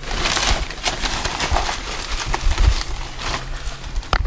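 A clear plastic zip bag rustling and crinkling as gloved hands pull it open and handle it, loudest in the first second, with scattered crackles after.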